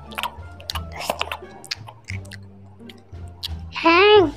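People eating: short crunching and chewing noises, close up, over background music with a steady low bass. A voice speaks in a gliding tone near the end.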